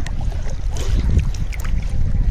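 Wind buffeting the microphone over shallow sea water, with small splashes and water lapping around people wading in the surf.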